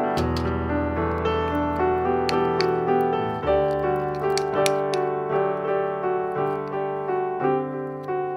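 Background piano music: a gentle melody of separate notes over sustained lower chords.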